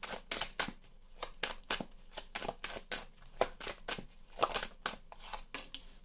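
A tarot deck shuffled by hand, overhand style: an uneven run of quick, crisp card flicks, several a second.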